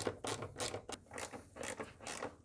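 Ratchet wrench with a T30 Torx socket and extension being swung back and forth to undo bolts, its pawl giving quick runs of clicks, about five a second.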